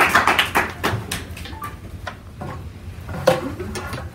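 Small audience applauding, dense at first and dying away about a second in, leaving a few scattered claps and taps.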